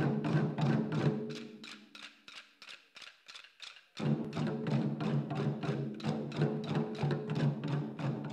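An ensemble of large Chinese barrel drums beaten in fast, dense strokes over sustained backing music. About a second in the drumming drops away to a few faint, scattered strokes. Near the middle it crashes back in loud all at once.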